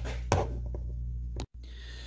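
A single sharp knock about a third of a second in, followed by a few light clicks, as lab equipment is handled on a bench, over a steady low hum. The sound drops out abruptly for an instant shortly before the end.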